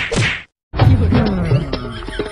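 Two quick whack sound effects of blows landing in the first half second, each with a short dropping thud beneath it, then a brief cut to silence. Background music with a steady beat starts about three-quarters of a second in.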